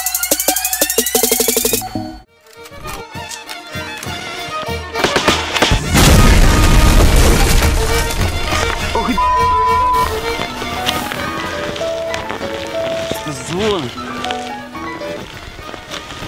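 An electronic intro jingle with a drum-machine beat cuts off about two seconds in. About six seconds in comes a loud explosion-like blast under dramatic music, with a brief steady beep a few seconds later and voices near the end.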